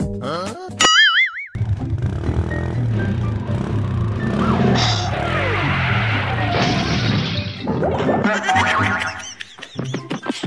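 Cartoon comedy sound effects over background music: rising pitch sweeps and a wobbling boing in the first second and a half, then comic music over a steady repeating bass pattern, with more gliding effect tones near the end.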